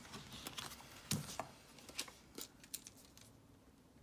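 Faint, scattered light clicks and rustles, like small handling noises, thinning out in the last second.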